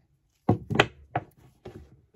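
About four light knocks and taps from handling a heavy red 4/0 battery cable and its tinned copper lug on a plywood work surface.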